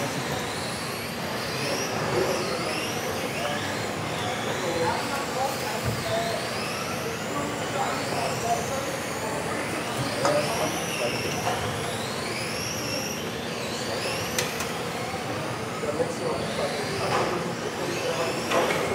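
Several 1:10 electric RC touring cars racing, their motors whining up and down in pitch over and over as they accelerate and brake through the corners, over a hum of voices in the hall.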